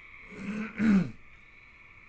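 A man clearing his throat once, about half a second in, lasting under a second.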